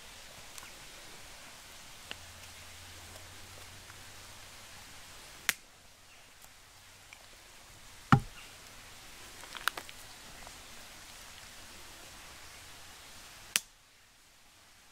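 Dry twigs and branches snapping in the woods: a handful of sharp cracks a few seconds apart, the loudest about eight seconds in, with a quick pair near the ten-second mark and a last crack just before the end.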